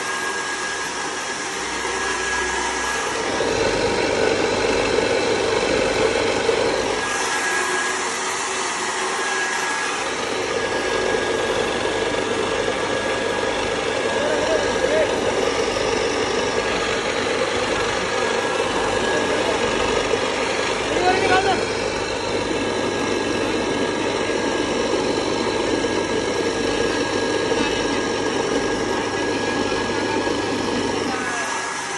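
Small electric wheat cleaning machine running steadily: motor hum and whir with grain rushing through the sieve and pouring out of the chute.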